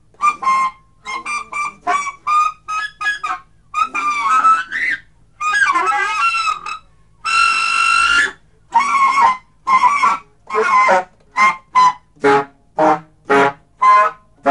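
Solo free-improvised alto saxophone played live, in short clipped phrases and flurries of notes with gaps between. A longer held note comes a little past midway, then a string of quick, separate stabbed notes near the end.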